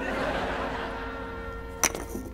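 Quiet background music with a held note, then near the end a single sharp click of a golf putter striking the ball.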